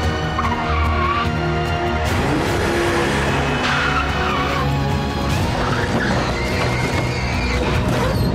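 Car tyres squealing in several wavering screeches as a BMW saloon slides and skids through tight turns, over background music.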